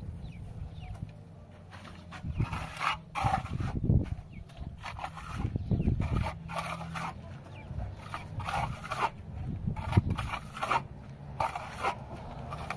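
Steel plastering trowel scraping wet plaster onto a rendered wall in repeated short strokes, about one a second after the first two seconds.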